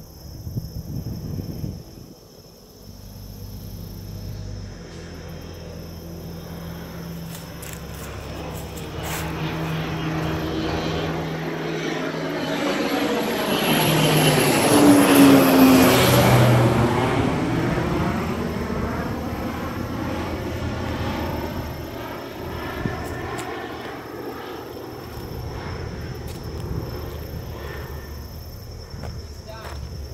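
Crop-dusting airplane passing low overhead. Its engine and propeller sound swells to a peak about halfway through and then fades as it moves away, dropping in pitch as it goes by.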